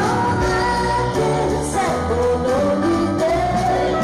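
A woman singing a slow melody live over band accompaniment, her voice holding long notes that slide between pitches above steady low notes.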